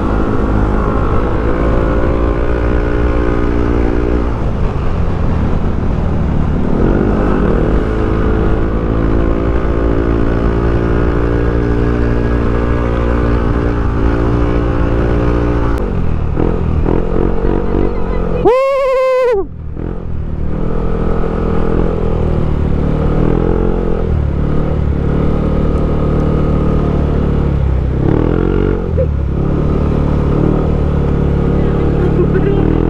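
Motorcycle engine running under way, its note climbing again and again as the bike pulls through the gears. About two-thirds of the way through, a short loud pitched sound rises and falls while the engine briefly drops out.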